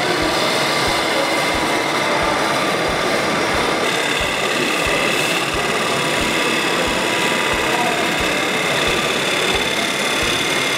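Hegner wood lathe running with a wooden blank spinning as a hand-held gouge cuts it: a steady motor whine over the hiss and scrape of the cut, with a soft low thump repeating about twice a second.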